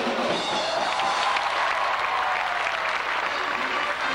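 Audience applauding over music.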